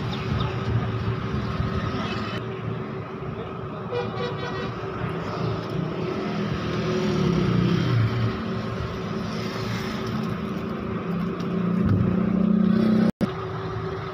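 Background road traffic: vehicle engines running, growing louder about seven seconds in and again near the end as vehicles pass.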